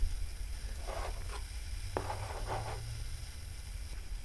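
Handling noise over a steady low hum: two short rustling scrapes, with a small click about two seconds in.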